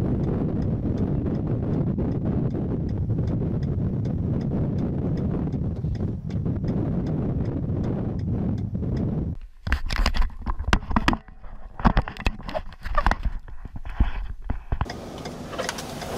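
A steady low rumble for about the first nine seconds, then it drops away and irregular sharp taps and knocks begin: the first large raindrops of the approaching thunderstorm striking the vehicle's windshield and body, with a hiss joining near the end.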